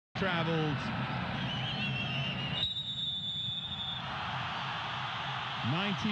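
Referee's whistle blown once in a steady, shrill blast of just over a second, signalling kick-off, over the constant noise of a stadium crowd.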